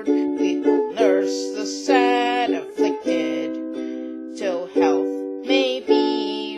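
Ukulele strummed in chords, with a stroke about once a second, accompanying a woman singing a folk ballad with a wavering, vibrato-like voice. The sound is that of a small room.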